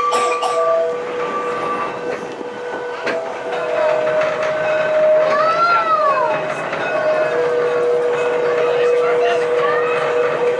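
Blackpool's Western Train illuminated tram running along the track, heard from on board: a running rumble carrying steady whining tones, and a higher whine that rises and falls in pitch about halfway through.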